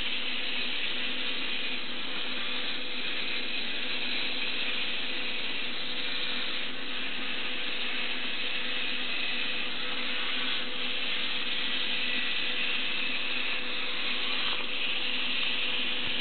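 Small DC gear motors of a tracked robot whirring steadily, with a slight change in the sound about every four seconds as one track reverses to make a turn.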